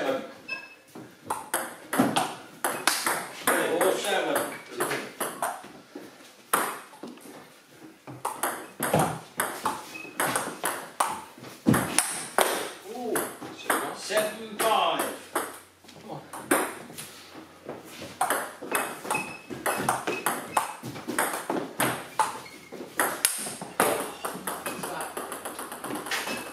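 Table tennis ball clicking off the bats and a Cornilleau 740 table in rallies, many separate sharp knocks, with voices talking at times.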